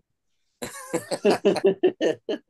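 A man laughing heartily in quick, rhythmic bursts, starting about half a second in after a moment of dead silence.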